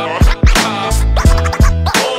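Hip-hop beat with deep, repeated kick-drum hits under a pitched backing, with DJ scratching.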